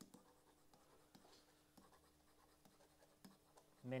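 Stylus writing on a digital pen surface: faint scratching with a few scattered light taps as handwritten words are formed.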